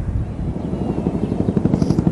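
Helicopter rotor beating in a fast, even pulse that grows louder as it approaches.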